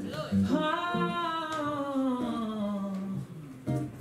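A man's singing voice holding one long note that rises briefly and then slides slowly down, over acoustic guitar, with the guitar coming back in more strongly near the end.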